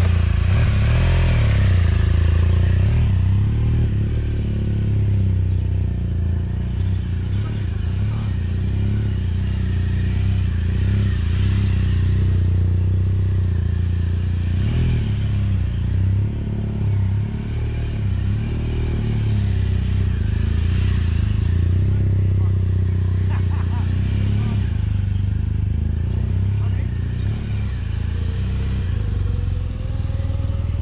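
BMW GS adventure motorcycle pulling away and being ridden slowly around a cone course, its engine rising and easing off every few seconds over a steady low rumble.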